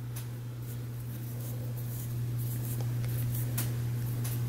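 Faint rustle and soft, scattered ticks of yarn being drawn through loops with a crochet hook while chaining stitches, over a steady low hum.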